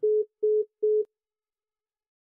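Three short electronic beeps, all at the same steady pitch, each about a quarter second long and evenly spaced in quick succession, like a phone's call-ended tone.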